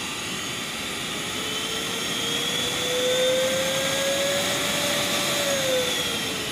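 Mayaka drum vacuum cleaner running on its speed-controlled motor. Its whine rises slowly in pitch as the speed knob is turned up, then drops near the end.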